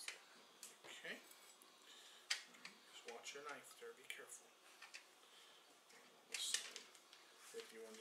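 Faint rustles and sharp crinkles of a plastic bacon package being handled and opened with a knife, the loudest crinkle about six seconds in.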